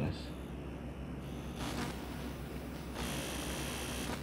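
Stylus scratching faintly on a tablet screen as a word is handwritten, in a couple of stretches in the second half, over a steady low electrical hum.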